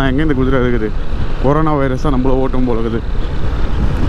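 A man talking, with pauses around a second in and near the end, over the steady low rumble of wind and the Yamaha FZ25 motorcycle being ridden.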